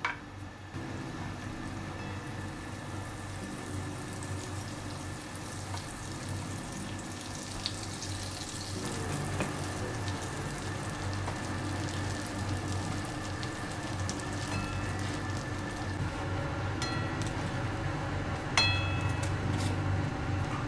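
Butter and bread frying in a nonstick frying pan, a steady sizzle that grows louder as the pan heats. A sharp metallic clack comes near the end.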